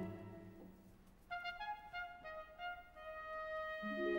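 Opera orchestra playing softly: a held low chord fades away, then after about a second a quiet melody of separate high notes begins, and lower instruments swell in near the end.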